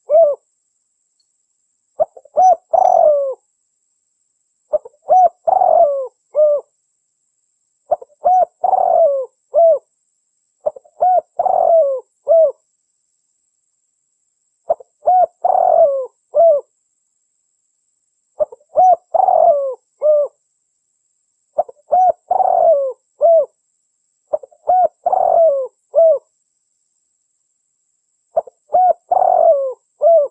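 Spotted dove cooing: a phrase of several short, hoarse coos repeated about every three seconds, with silence between phrases.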